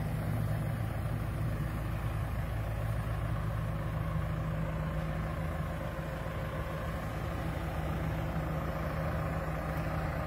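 Tracked hydraulic excavator's diesel engine running steadily at close range, a low even hum with no strikes or revving.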